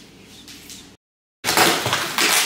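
Quiet room tone, broken by a moment of dead silence, then loud scraping and rustling as a large cardboard TV carton is handled.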